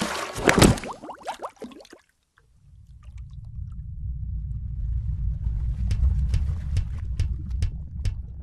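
Cartoon sound effects: a loud rushing gulp lasting about two seconds as a big-mouthed predator fish bites, then a brief silence and a low underwater rumble that swells, with scattered light clicks over its second half.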